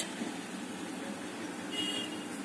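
Steady low background noise, with a brief faint high-pitched tone near the end.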